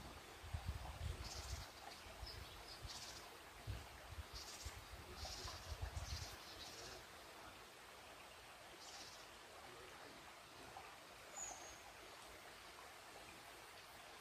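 Faint bird chirps: short high calls scattered through the first part, and a single thin whistled note near the end. Low rumbling runs under the first half.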